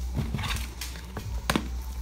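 Light handling clicks and knocks of small objects being put down and picked up on a table, with one sharp click about a second and a half in, over a steady low hum.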